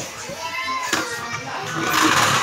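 Children's voices in the background, indistinct calls and chatter of kids playing indoors.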